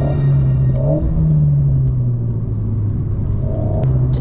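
Alpine A110's 1.8-litre turbocharged four-cylinder engine running on the move, its note rising about a second in and then falling away slowly.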